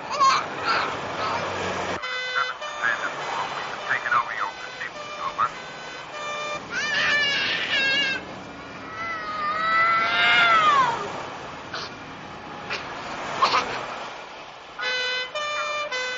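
Police sirens in a film soundtrack: a two-tone siren sounding in short alternating blocks near the start and again near the end, with rising-and-falling pitch glides in between.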